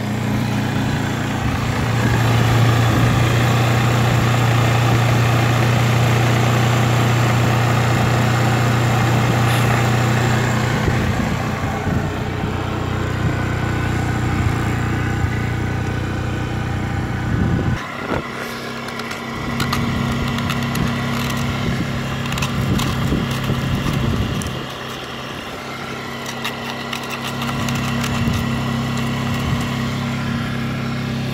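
Honda CBF 150's single-cylinder four-stroke engine idling steadily after a cold start in freezing weather, with a steady low hum; the level dips briefly twice in the second half.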